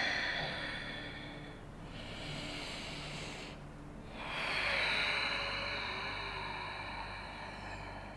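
A person breathing slowly and audibly, long airy breaths that swell and fade: one at the start, a shorter one about two seconds in, and a longer one from about four and a half seconds in.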